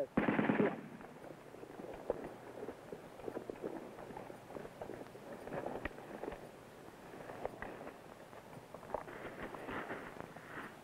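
Rifle fire: many quick, irregular shots in rapid bursts, fairly faint, from soldiers' rifles firing live rounds.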